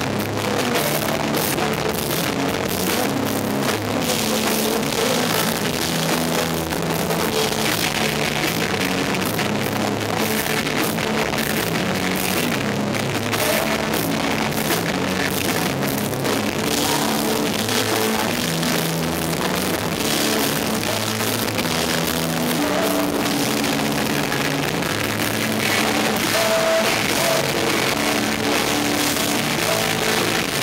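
Live rock band playing at a steady loud level: drum kit with cymbals, electric bass and electric guitar.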